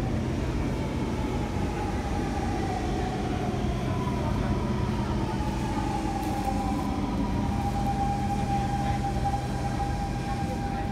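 Metro train pulling into the opposite platform, its motor whine falling in pitch as it slows and then levelling off into a steady tone. Under it runs the steady hum of the C151 train standing with its doors open.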